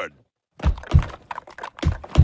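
Heavy thuds in a cartoon soundtrack, coming in pairs about a third of a second apart, roughly one pair a second, starting about half a second in.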